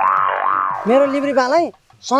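A comic cartoon-style "boing" sound effect, a dense twangy tone whose pitch dips and then rises, lasting most of the first second. A man's voice speaks briefly right after it.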